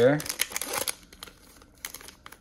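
Plastic wrapper of a Donruss football fat pack crinkling as it is handled, busiest in the first second, then a few faint crackles.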